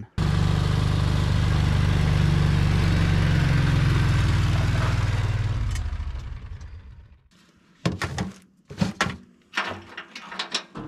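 Small utility vehicle's engine running steadily, then fading away over about a second and a half. It is followed by a few sharp knocks and clatters as things are handled in its cargo bed.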